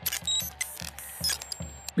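Electronic glitch and static sound effects with high beeping tones, starting suddenly, over background music with a steady beat.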